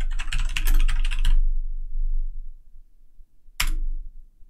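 Typing on a computer keyboard: a quick run of keystrokes for about a second and a half, then a single click near the end.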